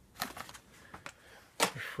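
Carded die-cast toy cars in plastic blister packs being handled in a cardboard box: a quick run of light plastic clicks and card rustles in the first second, then a few softer ticks.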